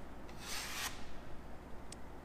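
Steel drywall knife scraping joint compound off a drywall screw head in one stroke of about half a second, wiped across the direction the mud was spread.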